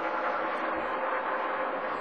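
Race trucks' V8 engines running flat out as a pack, heard as a steady, even drone from the broadcast track audio.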